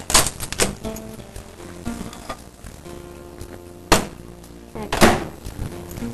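Quiet background music with several knocks and clunks as a glass bowl is taken out of a microwave oven and set on the counter; the two loudest come about four and five seconds in.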